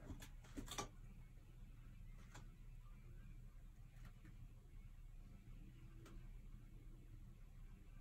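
Near silence: small-room tone with a low hum and a few faint clicks, a short cluster in the first second and single ones later.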